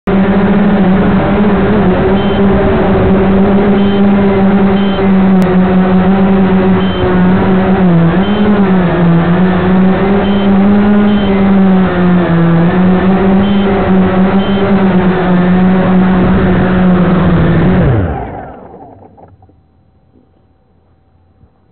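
Electric motors and propellers of a small remote-controlled aircraft, heard loud and close from a camera mounted on it. A steady whirring buzz wavers in pitch, then winds down and stops near the end, once the craft is on the ground.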